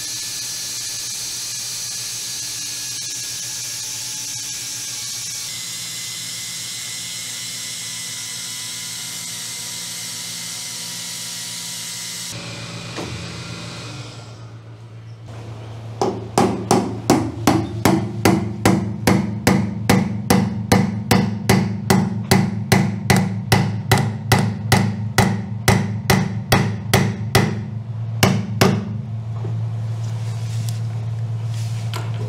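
A steady whirring tool noise for about the first twelve seconds. After a short lull comes a long, even run of hammer blows on the metal fitting plate, about three a second for some thirteen seconds, tapping it out of its bedded socket.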